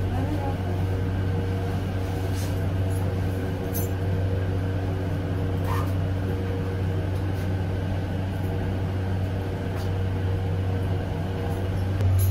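Steady low hum inside an elevator car, with a few faint steady tones above it and an occasional faint click.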